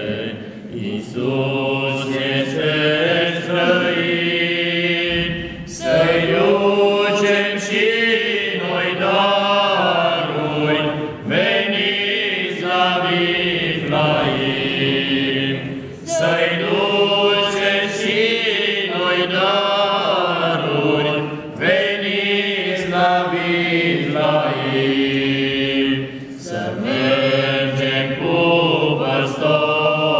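A small group of men singing a Romanian Christmas carol (colindă) together, unaccompanied, in sustained phrases of roughly five seconds with brief breaks for breath between them.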